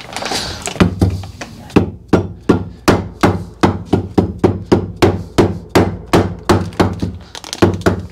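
Soft-faced mallet tapping on a Simson moped engine's aluminium crankcase half at the bearing seat, driving a bearing home: steady, evenly spaced blows, about three a second, starting about a second in.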